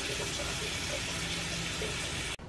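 Kitchen tap running steadily, filling a plastic jug with water.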